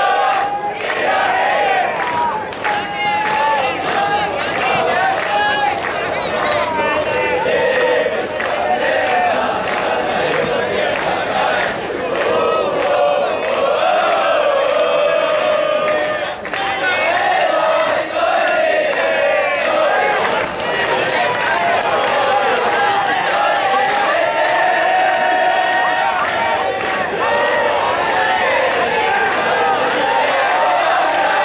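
Baseball crowd's cheering section chanting and shouting in unison, many voices carrying on without a break.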